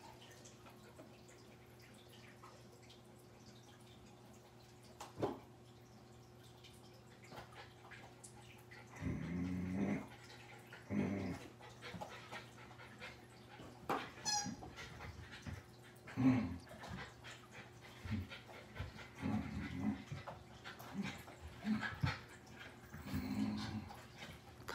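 West Highland white terrier and Scottish terrier puppy playing, with a string of short, low growls from about nine seconds in. There is a single knock about five seconds in.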